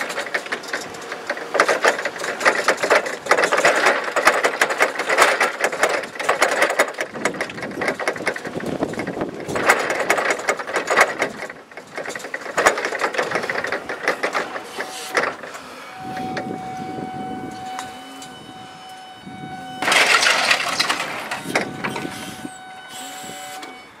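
Forklift on the move, its mast and forks rattling and clattering over the pavement for the first half. It then settles into a steady, fixed-pitch whine lasting several seconds, broken by a louder, noisier burst partway through.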